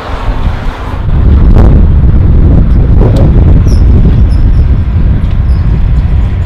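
Wind buffeting the microphone: a loud, flickering low rumble that builds about a second in and holds, with a few faint ticks over it.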